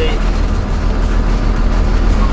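A converted school bus's engine running with a steady low drone, heard from inside the cab as the bus drives slowly.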